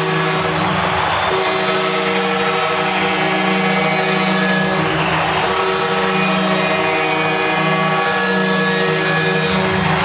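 Hockey arena goal horn blowing one long, steady blast over a cheering crowd, sounding a home-team goal.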